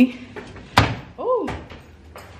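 A single sharp thump a little under a second in, like a door shutting or the camera being knocked, then a short tone that rises and falls and a lighter click.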